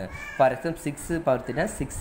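A person talking, with a brief high falling sound near the start of the talk.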